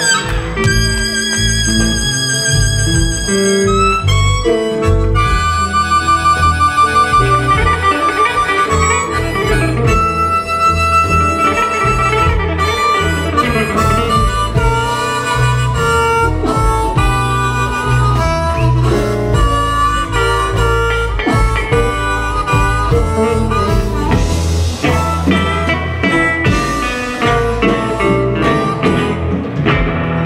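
Live electric blues: a harmonica plays lead, with long held notes partway through, over electric guitars, bass guitar and drums.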